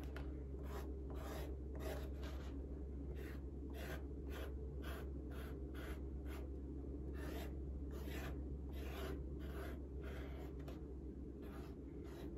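Felt tip of a dye-filled paint marker rubbed along the edge of a veg-tan leather notebook cover in short scratchy strokes, about two a second, with a brief pause midway. A steady low hum runs underneath.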